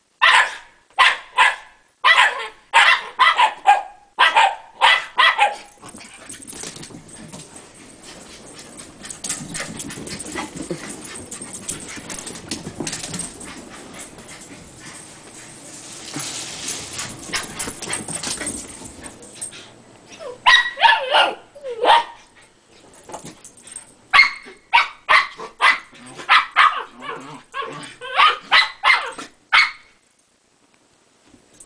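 Shiba Inu dogs barking in play, short sharp barks in quick runs of about two a second. In the middle comes a long stretch of steady noise with no barks before the barking starts again.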